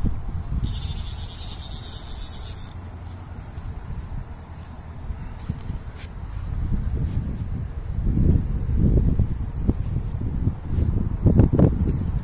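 Wind buffeting the microphone in gusts, heavier in the second half. Shortly after the start there is a high hiss of about two seconds, fishing line running off a fixed-spool reel after a cast.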